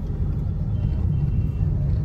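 Steady low rumble of a car's engine and road noise, heard from inside the cabin while driving.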